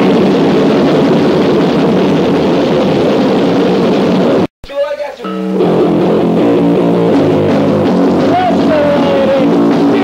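A rock band playing loud distorted electric guitar on a rough demo recording. About four and a half seconds in, the sound cuts out completely for a moment. A guitar riff then starts up, with a voice over it near the end.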